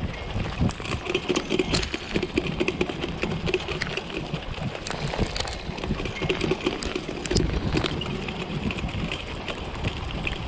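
A dog-drawn sulky rolling over a dirt trail strewn with leaf litter and bark, its wheels and frame giving frequent small clicks and knocks over a rough rolling noise.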